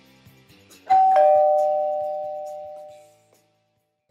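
Two-note ding-dong chime sound effect of a subscribe animation's notification bell: a high note, then a lower one a moment later, both ringing out and fading over about two seconds, over faint background music.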